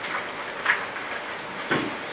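Steady background hiss of room noise, broken by two brief rustles about a second apart, one near the middle and one near the end.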